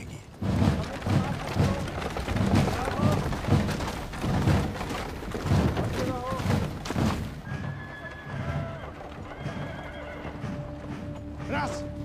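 Film soundtrack of a marching army: horses whinnying and hooves over heavy low thumps about twice a second, with one wavering whinny about six seconds in. Held notes of orchestral music come in after about seven seconds.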